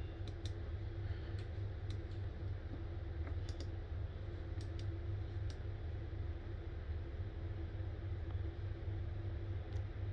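Small buttons on a USB power meter clicking about a dozen times at irregular intervals while its readings are reset, over a steady low hum.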